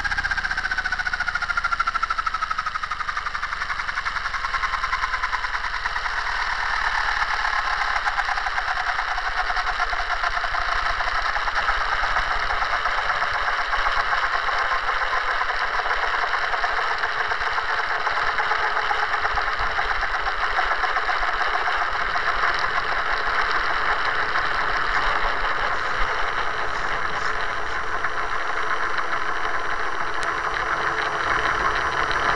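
Align T-Rex 700 radio-controlled helicopter heard close up through a camera on its tail boom: its whine falls in pitch over the first several seconds as it winds down, then it settles into a steady running noise while it sits on the ground.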